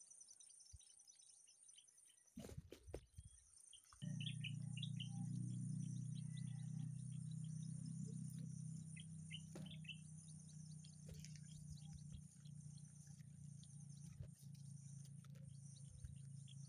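Faint farmland ambience: steady high insect buzzing with scattered bird chirps. A brief rumble comes a little after two seconds, and from about four seconds in a steady low hum joins.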